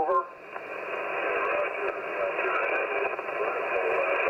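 Receiver static from a Yaesu FT-710 transceiver's speaker on the 20-metre band in single-sideband mode: a steady, thin hiss squeezed into a narrow voice-width passband as the VFO is tuned off a station, with faint garbled voice fragments in the noise.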